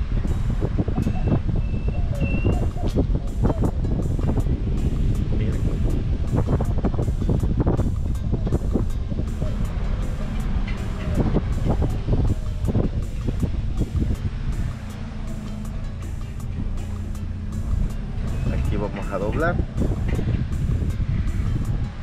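A car rolling slowly along a concrete street: a steady low rumble of engine and road noise, with scattered knocks and a few short high chirps.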